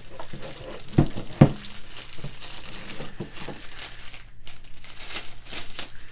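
Plastic packing wrap crinkling as a wall charger and its cable are pulled out of it by hand, with two short knocks a little after a second in.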